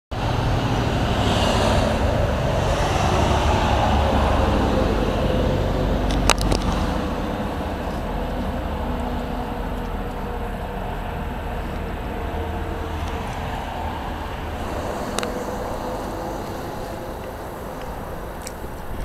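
Road traffic going by: a louder stretch of passing vehicles in the first six seconds, then a steadier, quieter rumble. A sharp click comes about six seconds in and another near fifteen seconds.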